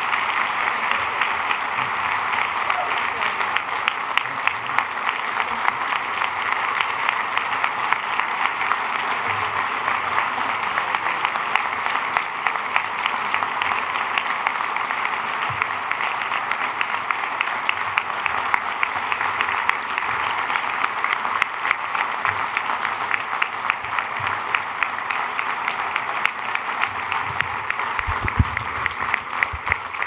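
A large audience applauding steadily for about half a minute, with dense clapping that fades out right at the end. A few low thumps come near the end.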